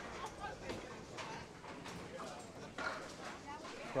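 Candlepin bowling alley ambience: scattered wooden knocks and clatters of pins and balls, with faint voices in the background.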